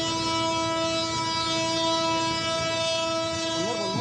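Diesel locomotive's horn sounding one long, steady blast on a single pitch.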